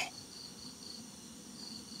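Crickets chirping quietly in a high, steady pulse, about three chirps a second, with a short break partway through.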